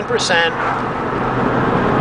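Steady engine and road noise inside the cab of a Dodge Dakota pickup cruising on wood gas (producer gas made from dried raw wood).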